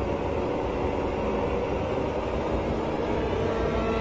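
A low, rumbling swell with faint sustained tones underneath, part of a dark, ominous background score.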